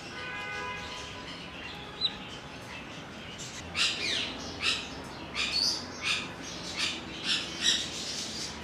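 Caged birds squawking: a run of short, harsh, high calls in quick succession through the second half, after a single thin whistle about two seconds in.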